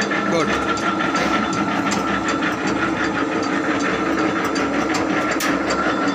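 Electric motor of an automatic chappal-cutting press machine running steadily with a constant hum, over a run of rapid light clicks and one sharper click near the end.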